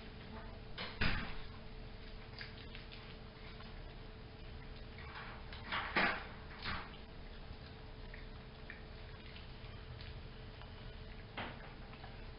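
Quiet indoor room tone with a steady faint hum, broken by a few short knocks: one about a second in, the loudest pair around six seconds, and a last one near the end.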